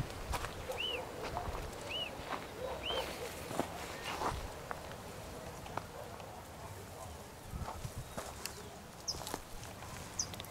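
A bird calling in short notes that rise and fall, about one a second for the first three seconds, with a couple of higher falling calls near the end. Rustling and light clicks of footsteps through dry brush run under it.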